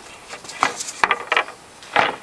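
A few light clinks and knocks as the metal truss pole ends are dropped and seated into the upper tube assembly's blocks of a truss Dobsonian telescope.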